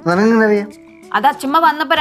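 A loud, drawn-out vocal sound from a person lasting under a second, then a short pause and talking.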